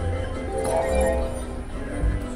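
Video slot machine playing its electronic win jingle with clinking chimes as winning symbols clear and the win meter counts up during a cascade of the reels.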